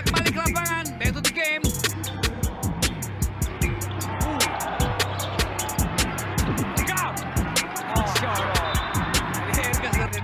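Background music with a fast, steady beat and a steady bass under a vocal line.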